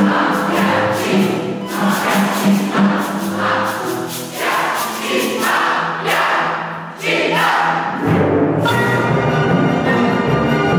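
Youth orchestra music: a rhythmic passage of repeated noisy accents about once a second over a held low note, with group voices joining in. Sustained string playing takes over about eight and a half seconds in.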